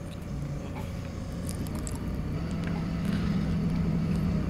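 Doosan 4.5-ton forklift's engine running steadily, heard from inside the cab, gradually getting louder as the truck drives on.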